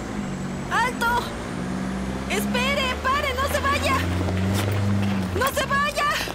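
A minibus engine running low and steady as it pulls away, fading out about five seconds in. A high voice calls out over it in three bursts.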